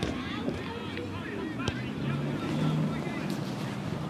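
Distant players' shouts and calls across an open football pitch, with wind noise on the microphone and a single sharp knock a little before halfway.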